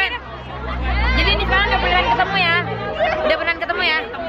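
Overlapping, excited chatter of several young women's voices, with crowd babble around them and a low rumble under the voices in the first half.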